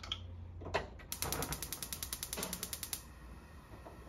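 Gas stove burner igniter clicking rapidly, about ten clicks a second for about two seconds, as the burner is lit.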